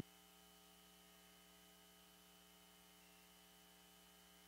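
Near silence with a faint, steady electrical mains hum.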